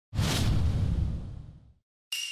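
Title-card sound effect: a sudden whoosh with a heavy low boom underneath. It starts right at the opening and fades away over about a second and a half.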